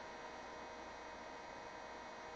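Faint steady electrical hum with a hiss: the background noise of a webcam recording in a pause between sentences.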